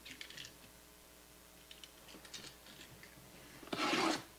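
Faint computer-keyboard typing in two short runs of light clicks, followed near the end by a louder rustle.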